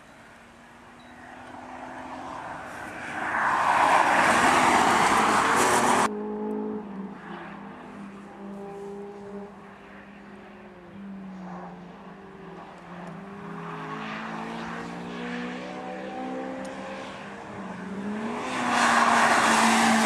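Rally cars at full speed on a road stage, passing one after another. A loud close pass cuts off abruptly about six seconds in. Then a more distant engine revs up and down through gear changes, and another car passes loudly near the end.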